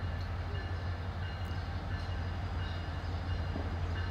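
Diesel freight locomotive rolling slowly along street track, its engine giving a steady low drone.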